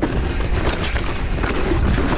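Propain Spindrift mountain bike running fast down a dirt trail: tyres rolling over the dirt and the bike rattling with many small clicks and knocks, under a steady rush of wind on the camera's microphone.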